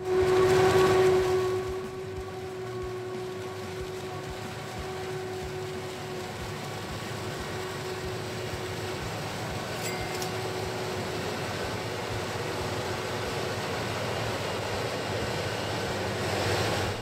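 Krone BiG X self-propelled forage harvester chopping standing maize: a steady mechanical drone with a steady whine over it, loudest in the first two seconds.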